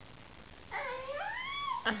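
A cat's single drawn-out meow, dipping and then rising in pitch before falling away, about a second long.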